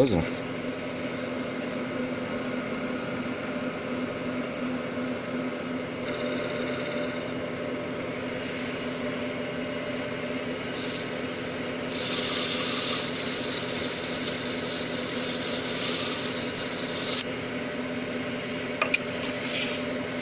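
Wood lathe running steadily, spinning an oak napkin ring in its chuck. About twelve seconds in, a hissing rub against the turning wood lasts about five seconds.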